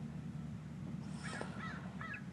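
Faint short animal calls, a few in the second half, over a low steady hum.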